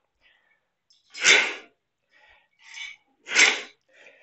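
Two short rushes of air about two seconds apart, with a fainter one between them.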